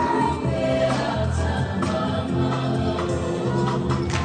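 A Pacific Islander song for a group dance: several voices singing together in a gliding melody over held low bass notes.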